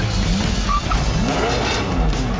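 Tyres squealing as a red supercar skids, with rising and falling squeals, over background music.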